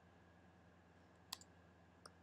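Near silence with a single short click from a computer mouse or keyboard, just past halfway.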